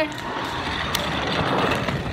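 Rustling and scuffing handling noise as the puppet is moved about quickly, with a single sharp click about a second in.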